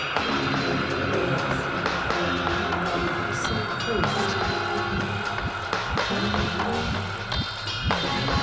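Electronica played live on synthesizers and a pad controller: sustained synth notes over a steady bass line, with several quick rising pitch sweeps in the low range during the last couple of seconds.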